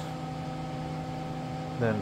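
A steady background hum made of several constant tones, the drone of a running fan or machine, with one short spoken word near the end.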